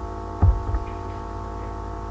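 Steady electrical mains hum with many overtones on the recording, with a single low thump about half a second in.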